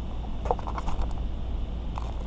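Plastic bait packaging crinkling and rustling as a pack of soft-plastic worms is handled, a short cluster of faint clicks and rustles about half a second to a second in, over a steady low rumble.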